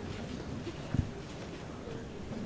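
Footsteps and shuffling of singers settling on a stage and its risers, with one low thump about a second in.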